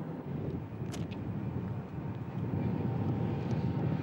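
Steady low outdoor rumble with wind on the microphone, and a short hiss about a second in.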